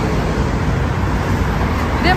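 City bus approaching and drawing up close to the kerb, its engine running under a steady wash of road traffic noise.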